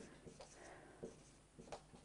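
Marker pen writing on a whiteboard: faint scratchy strokes with a few light taps.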